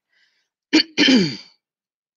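A woman clearing her throat: a short catch followed by a brief voiced sound that falls in pitch, about a second in.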